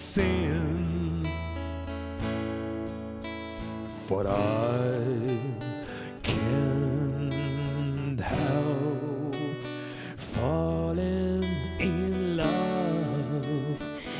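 A male voice sings with vibrato over his own strummed black Fender acoustic guitar. Full chords ring out about every two seconds.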